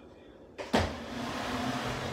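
Wooden chair shifting on a hardwood floor: a knock, then a steady grating scrape of the chair legs sliding over the boards for about a second and a half.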